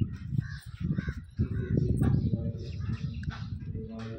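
Crows cawing, over a loud low rumble on the microphone, loudest around the middle.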